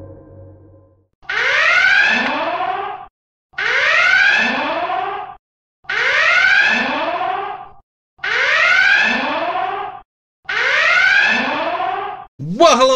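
Warning alarm sound effect: five repeated whooping blasts, each sweeping up in pitch and holding for nearly two seconds, with short gaps between them. Before the first blast, a ringing tone dies away.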